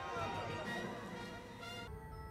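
Faint background music with quiet speech underneath.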